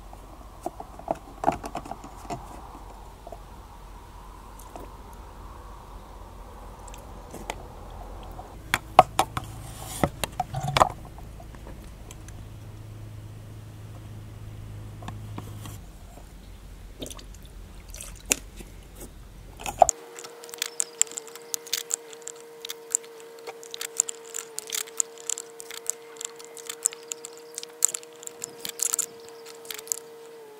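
Turkey baster's rubber bulb squeezed and released, sucking engine coolant up out of the expansion tank and squirting it into a plastic jug: wet squelching and gurgling with scattered sharp plastic clicks and taps. About two-thirds of the way through, a faint steady hum comes in underneath.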